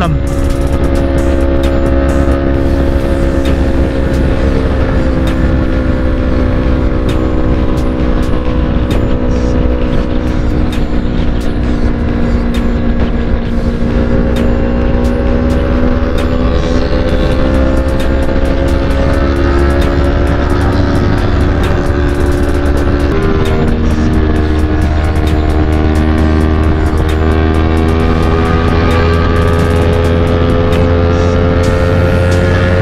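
Yamaha R3's 321 cc parallel-twin engine running at a steady cruising speed on the highway, heard onboard over heavy wind rumble on the camera microphone. Its pitch drifts slowly and changes abruptly once, about three-quarters of the way through.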